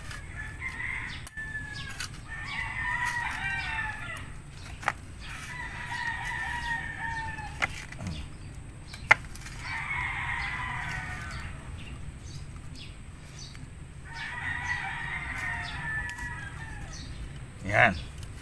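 A rooster crowing repeatedly, about four long crows a few seconds apart, with a few sharp clicks from a hand trowel working soil between them.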